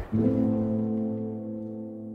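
A sustained low chord in the advertisement's background music sets in at the start and holds steady while slowly fading.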